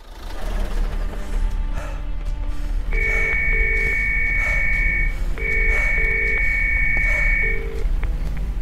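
A telephone ringing tone heard over the line, the British double 'burr-burr' ring: two full rings and the start of a third as a call rings out unanswered, over steady background music.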